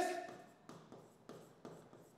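Faint scratches and taps of a pen writing on an interactive smartboard's glass screen, a few short strokes.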